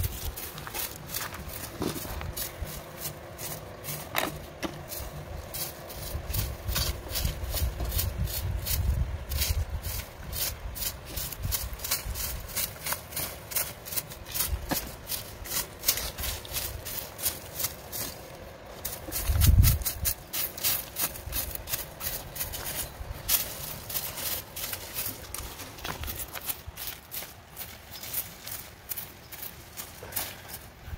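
Hoes chopping and scraping through grass and soil: many quick, irregular strikes and scrapes. Low rumbles come and go, with one about a third of the way in and a short one a little past the middle.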